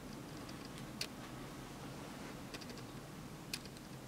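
A few faint, sharp clicks over a steady low hiss, the loudest about a second in and two more near 2.5 and 3.5 seconds.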